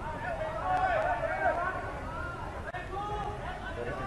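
Faint, distant voices of players calling and shouting across an open-air football pitch, over a low steady background noise.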